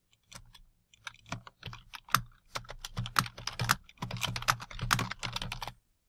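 Typing on a computer keyboard: a quick, uneven run of keystrokes that starts a moment in and stops shortly before the end.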